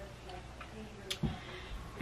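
A single light click about a second in, with a soft low thud right after and faint handling noise, from handling the clip-in ponytail extension.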